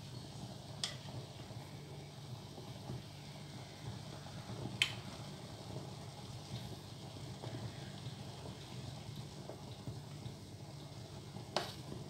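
A ladle stirring a pot of thick beef tongue and white bean stew, knocking sharply against the enamel pot three times: about a second in, about five seconds in, and near the end. A steady low hum runs underneath.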